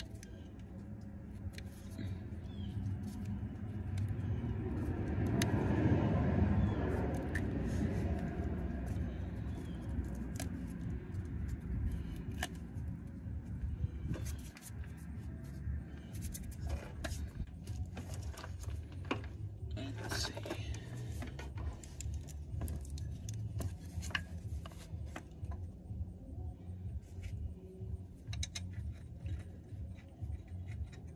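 Small metallic clicks and scrapes as a splitter air-line fitting is handled and threaded into a port on a truck transmission case, the clicks coming more often in the second half. Under them runs a steady low rumble that swells for a few seconds early on.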